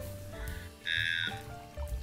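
Background music with held notes over a steady bass, and a brief high-pitched sound about a second in.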